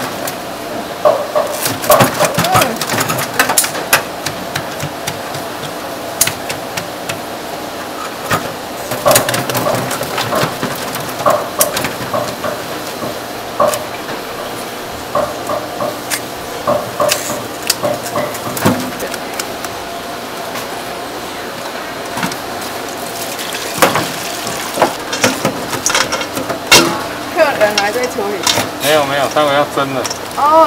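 Kitchen shears snipping into live spiny lobster shells, with irregular sharp clicks and the clatter of shells knocking on a stainless steel sink, over a faint steady hum.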